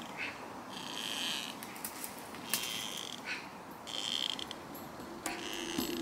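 Tree creaking: a high, squeaky creak repeating about every one and a half seconds, four times, with a couple of shorter gliding squeaks between.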